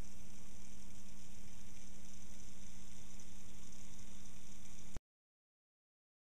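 Steady low electrical hum over a constant hiss, cutting off suddenly to silence about five seconds in.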